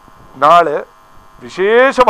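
A man's voice reciting the day's Hindu almanac (panchanga) details in Sanskrit, in two short phrases with a pause between them, over a faint steady electrical hum.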